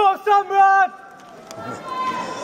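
A high-pitched voice calls out about three drawn-out, level-pitched syllables in the first second, followed by low background noise.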